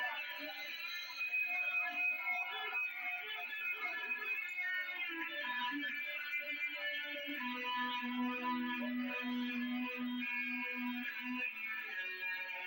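Rock band playing live, led by electric guitar with effects and some distortion. In the second half a low note is held steadily for about four seconds.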